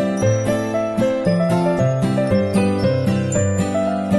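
Background instrumental music with a steady beat and a melody of short, changing notes.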